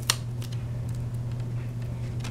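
Light handling of a DVD and its plastic hub insert: a sharp click just after the start, then a fainter one about half a second in. A steady low hum runs underneath throughout.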